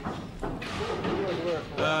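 Indistinct talk and room noise from several people, with a man's voice starting clearly near the end.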